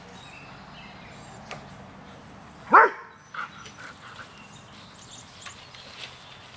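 Airedale terrier giving one short, sharp bark about three seconds in, sweeping quickly up in pitch.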